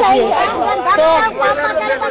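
Speech only: several people talking at once, a woman's voice in front.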